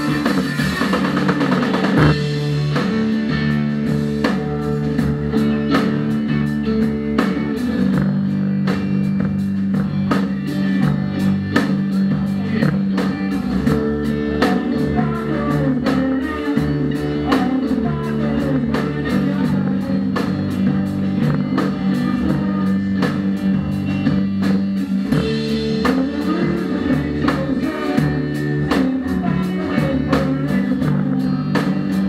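A rock band playing live: guitars holding sustained low notes over a drum kit struck in a steady beat.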